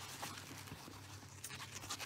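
Faint rustling and light scratching of a silky coat lining fabric being handled while pins are pushed through it.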